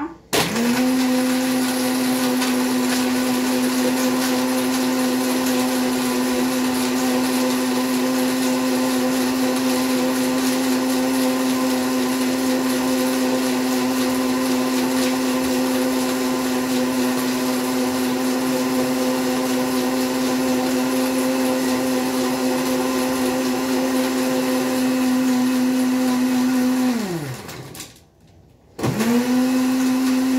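Countertop blender motor running at a steady speed, blending kale leaves with water into juice. About 27 seconds in it is switched off and winds down with a falling pitch, then it is switched on again about a second later.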